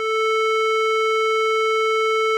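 An additive synth built in Pure Data holds a steady 440 Hz (A4) tone: a sine-tone fundamental stacked with only the odd harmonics, the 3rd, 5th and 7th, each quieter than the last. It swells in at the very start and then holds one unchanging pitch.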